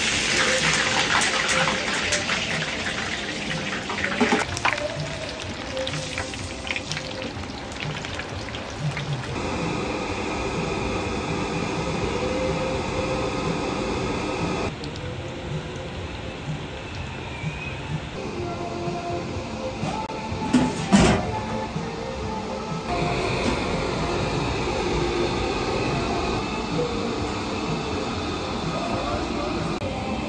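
Deep-fryer oil bubbling and sizzling around a wire basket of French fries, with background music. The sound changes abruptly several times.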